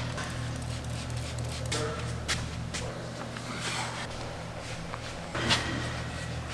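Trigger spray bottle of spray wax squirting a few short sprays onto car paint, the clearest about two seconds in and near the end, over a steady low hum.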